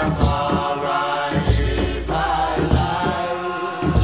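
A Rastafari chant: several voices singing long held notes together over a deep drum that booms every second or two.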